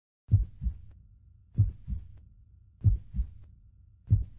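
Slow heartbeat sound effect: deep paired 'lub-dub' thumps, each a stronger beat followed by a softer one, three times, about one pair every 1.3 seconds.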